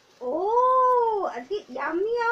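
A single long meow lasting about a second, rising and then falling in pitch, followed near the end by a short rising voice sound.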